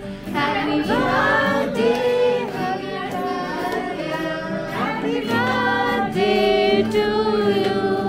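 A group of voices, adults and children, singing a song together while hands clap along.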